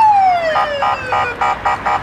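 A siren: one long falling wail that glides down in pitch, then a quick pulsed tone repeating about four times a second.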